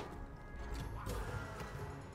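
Online slot game audio: steady background music with short reel-stop hits, and a brief rising effect about a second in as a small win lands on the reels.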